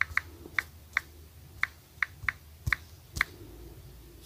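Smartphone on-screen keyboard clicking as keys are tapped while typing a search: about nine short clicks at an uneven typing pace over a low hum.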